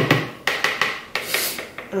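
A spatula stirring and scraping dry flour mixture around a plastic mixing bowl in quick, repeated strokes.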